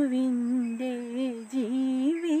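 A woman's voice singing a Christian devotional song unaccompanied, in long held notes with a brief dip in pitch near the middle.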